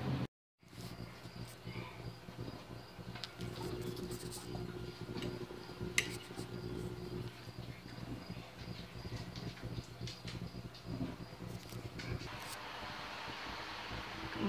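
Quiet background noise: a steady low hum with a faint, high, evenly pulsing chirp and a few small clicks, one sharper about six seconds in. It cuts out briefly just after the start.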